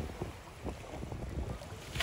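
Small waves lapping gently at the shoreline, with a low rumble of wind on the microphone.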